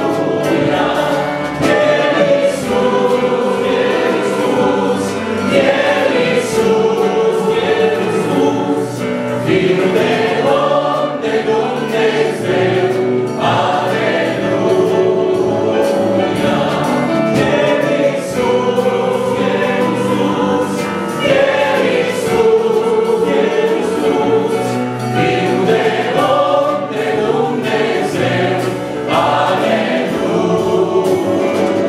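Congregation singing a Romanian Christmas hymn together, many mostly women's voices in unison, continuous and steady, with an alleluia refrain.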